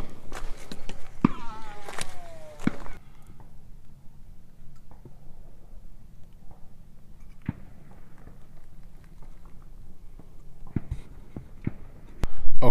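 Light handling noises: a few sharp clicks and a brief falling whir in the first three seconds, then low background with scattered soft ticks.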